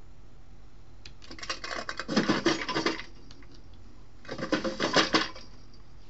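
Clattering and rattling of small objects being rummaged through, in two bursts: a longer one of about two seconds, then a shorter one about a second later.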